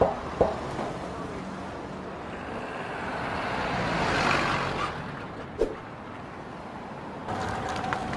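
Street traffic: a vehicle passes, its sound swelling and then fading around the middle. There are a few sharp knocks near the start and another a little past halfway.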